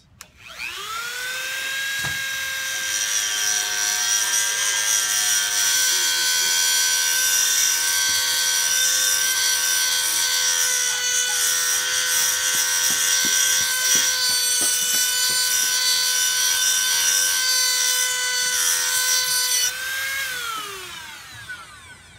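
Dremel rotary tool with a metal grinding wheel spinning up to a steady high whine and grinding the edge of a lawnmower blade with a hiss, then switched off and winding down near the end.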